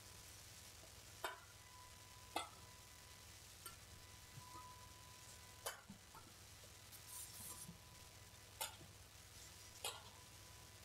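Badminton rackets striking a shuttlecock during a rally: six faint, sharp hits spaced one to three seconds apart.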